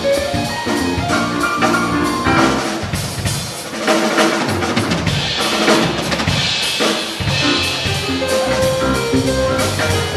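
A small jazz band playing a bebop tune live, with a prominent drum kit (snare and bass drum hits and a cymbal wash in the middle) over pitched notes from the steelpan and keyboard.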